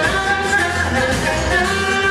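A live band playing a song with a woman singing the lead, over a steady bass and drums.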